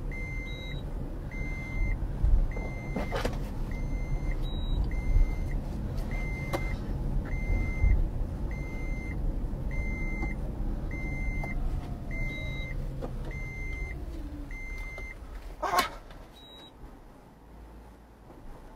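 A car's dashboard warning chime beeping evenly, about once a second, over a steady low engine and road rumble heard inside the cabin. The chime stops about 15 seconds in. A couple of sharp knocks stand out, one about 3 seconds in and one near the end.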